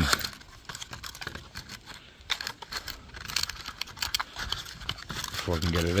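Small cardboard parts box and its packaging handled and opened by hand: a run of irregular crinkling and crackling.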